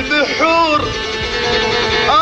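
A voice singing an Arabic folk song over a plucked string instrument, holding one long steady note through the second half.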